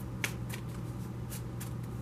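A deck of tarot cards being shuffled by hand: a run of quick, irregular card snaps and riffles, the sharpest about a quarter second in. A steady low hum from the room's heater runs underneath.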